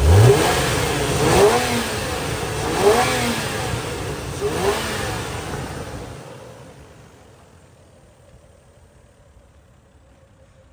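Toyota 1JZ-GE 2.5-litre naturally aspirated straight-six revved four times from the throttle under the hood, each rev rising and dropping back to idle. After the fourth rev the engine sound fades away.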